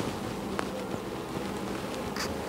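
A honeybee colony buzzing in a steady low hum, its hive open for inspection with frames lifted out.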